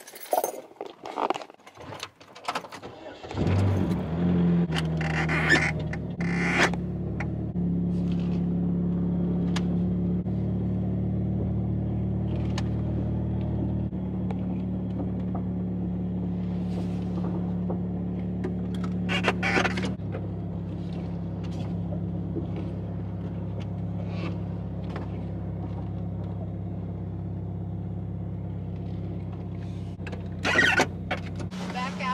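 A few clicks and knocks, then a car engine starts about three seconds in and runs steadily at idle and low speed while the car is moved a short way. Its note steps down slightly about twenty seconds in.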